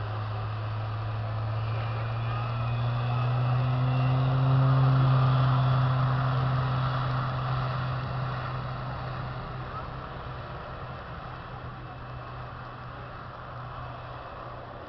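Single-engine propeller plane at full power on its takeoff run, a steady low propeller drone with a faint high whine above it. It grows louder as the plane passes, peaking about five seconds in, then drops slightly in pitch and fades as the plane lifts off and climbs away.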